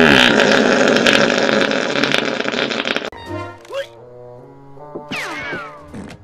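A long, loud, buzzy cartoon fart sound effect from a warthog character, lasting about three seconds and cutting off suddenly. Quieter cartoon music follows, with a few falling whistle-like glides near the end.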